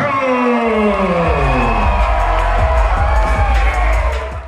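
Loud music starting with tones that fall in pitch over the first two seconds, a heavy bass line coming in under a second in, with a crowd cheering underneath.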